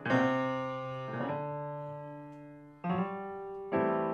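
Upright acoustic piano played solo: four chords struck a second or so apart, each left ringing and slowly fading.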